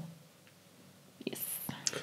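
Speech only: a pause of near silence for about a second, then a short, quiet spoken "yes" with a strong hiss on the "s".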